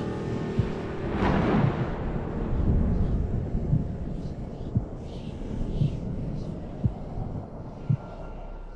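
A storm at night: a low rumble of thunder with wind noise. A whoosh swells about a second in, and several dull low thumps sound through the rumble.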